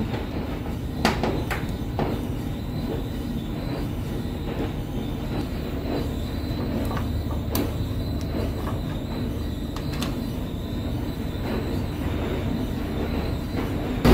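Steady low mechanical rumble, with a few scattered sharp clicks and taps as a screwdriver works the screws of a tumble dryer's door-switch plate and the plate is pulled off.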